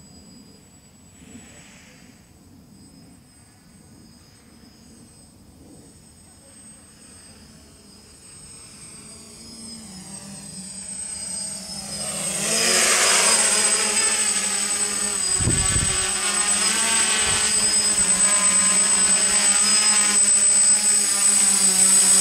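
DJI F450 quadcopter's brushless motors and propellers, faint at first, growing louder about halfway through as it flies in toward the camera, then a loud steady buzz as it hovers close. A brief low rumble comes about two-thirds of the way through.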